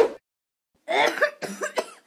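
A woman coughing several times in quick succession, starting about a second in, the coughs of someone ill with a cold. A brief sharp sound comes at the very start.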